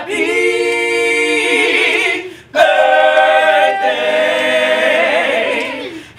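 A small group of men and women singing a cappella in harmony. There are two long held phrases, with a short break for breath about two and a half seconds in.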